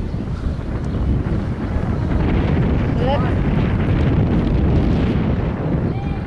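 Wind buffeting the microphone outdoors: a loud, steady low rumble with no pitch.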